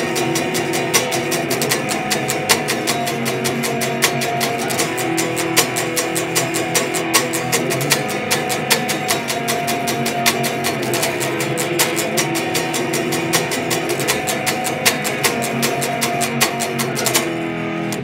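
Electric guitar, a Fender Telecaster tuned to drop B, played through an amp: a run of low power chords with a third added, picked in a steady rhythm. The playing stops abruptly near the end.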